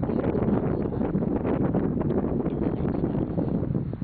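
Wind buffeting the microphone: a loud, steady deep rumble with no letup.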